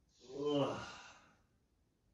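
A person lets out one drawn-out, voiced sigh lasting about a second while holding a tight hip and glute stretch.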